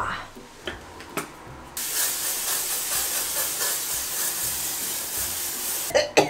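An aerosol spray can sprayed in one long, steady hiss that starts suddenly a little under two seconds in, after a couple of light knocks.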